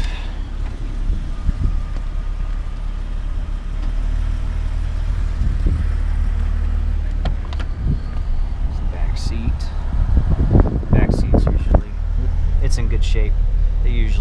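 Jeep Cherokee XJ's 4.0 PowerTech inline-six idling with a steady low rumble. Knocks and clunks from the doors and interior being handled come in the second half.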